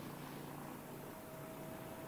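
Electric freight train running along the line in the distance: a steady low rumble with a faint whine above it.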